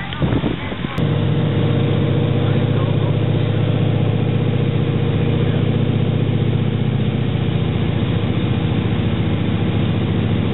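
Antonov An-2's nine-cylinder radial engine droning steadily at cruise power, heard from inside the cabin in flight. The drone begins abruptly about a second in and holds an unchanging low hum.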